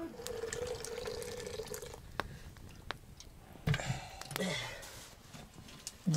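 Liquid poured into a vessel, a steady filling tone lasting about two seconds, followed by a few light clinks of kitchen ware.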